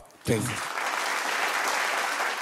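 Studio audience applauding, a steady clatter of many hands clapping that swells in a moment after a brief hush.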